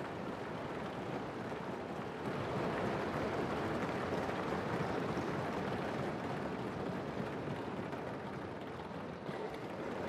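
Applause and crowd noise from members filling a parliament chamber, a steady wash of sound that grows a little louder about two seconds in.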